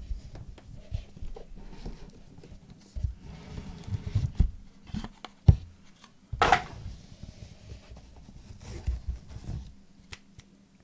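Hands handling a 2015 Leaf Trinity Baseball card box: the cardboard box is opened and a cased card lifted out of its foam insert, with scattered soft knocks, thuds and rubs. There is one short scraping rustle about six and a half seconds in.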